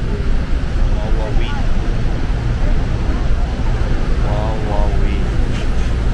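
Loud, steady low rumble of the Horseshoe Falls at Niagara, heard up close from the deck of a tour boat, with passengers' voices calling out briefly twice.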